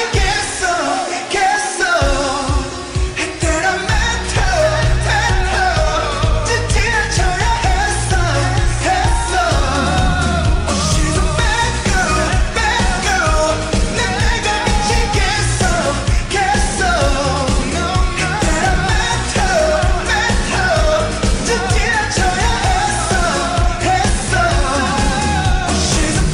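Korean pop song: sung vocals over a pop backing track. Drums come in about two seconds in and bass a couple of seconds later, carrying a steady beat.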